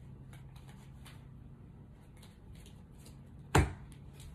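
Tarot card decks handled on a cloth-covered table: faint rustles and small taps, then one sharp knock about three and a half seconds in as a deck is set down.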